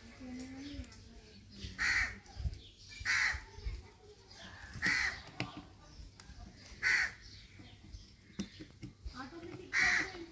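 A crow cawing repeatedly: five short, harsh caws, one every one to three seconds at irregular spacing.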